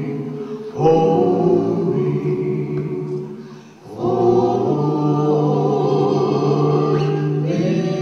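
Live vocal group singing long, held harmony chords in a gospel style. The chord changes about a second in, fades briefly just before the middle and comes back strongly, then shifts again near the end.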